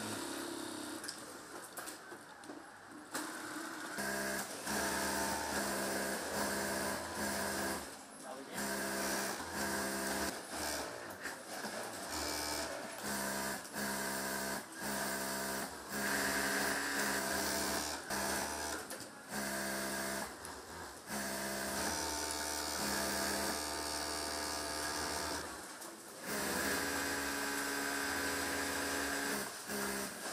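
Industrial sewing machines running in bursts, each stitching run starting and stopping after one to several seconds, with a steady motor hum under it. The machines are quieter for the first few seconds, then run almost continuously with short pauses.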